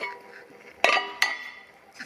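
Metal clinks as an Ariel Square Four primary chain cover is set down onto a machined aluminium ring on a metal table: a light clink at the start, a sharper ringing knock just under a second in, then a small tap.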